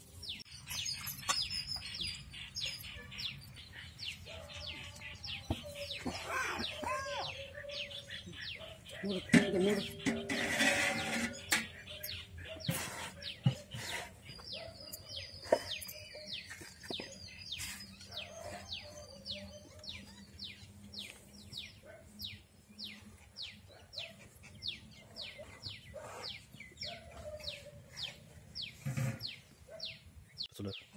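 Birds chirping, one repeating short high downward chirps about two times a second through much of the stretch. A louder spell of noise comes about ten seconds in.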